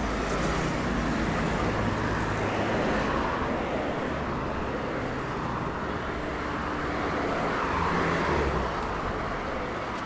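City street traffic: cars driving past with engine and tyre noise, growing louder about three seconds in and again near the end.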